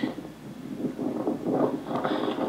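Wind buffeting an outdoor microphone, a steady low rush of wind noise.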